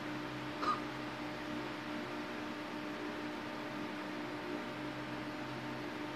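A pause in speech: steady low hum of room tone, with one brief short sound under a second in.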